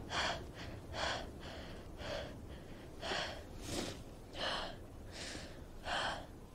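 A woman breathing hard and fast in panic, with about ten short gasping breaths, one every half-second to second. This is the sound of a panic attack brought on by agoraphobia.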